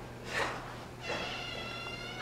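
A door creaking open on its hinges: one drawn-out squeal with many overtones, falling slightly in pitch and lasting about a second, after a brief scrape a little before it.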